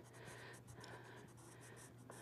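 Faint scratching of a charcoal pencil on drawing paper: short hatching strokes, several a second, as shadows are worked into a drawing.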